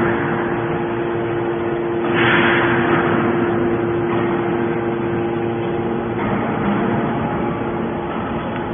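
Y81T-135T hydraulic scrap-metal baler running: a steady mechanical hum from its motor and hydraulic pump, with a loud hissing rush about two seconds in that fades away over a second or so.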